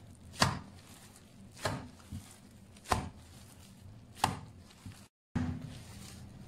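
A lump of minced-meat kebab mixture being lifted and slapped down onto a metal baking tray, four sharp thuds about a second and a quarter apart, with a smaller knock between two of them. The meat is being slapped to work and bind it for kebab.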